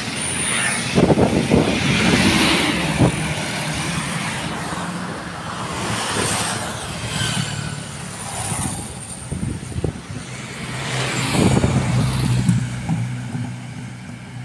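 Road traffic passing close by: motorcycles, cars and trucks going by one after another over a steady engine hum. The loudest passes come near the start and again about eleven seconds in.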